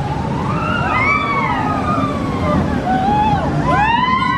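Steel family launch coaster train running along its track with a steady low noise, while riders' screams rise and fall over it. Several voices pile up near the end as the train passes close.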